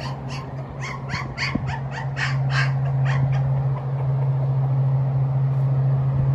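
Sixteen-day-old pit bull puppies squealing while wrestling: a quick run of about a dozen short, high-pitched cries in the first three seconds, then quieter. A steady low hum runs underneath.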